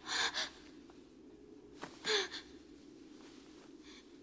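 A person gasping twice, two short sharp breaths about two seconds apart, over a steady low hum.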